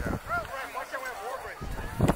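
A few short, distant shouted calls from voices out on the pitch, over low outdoor rumble.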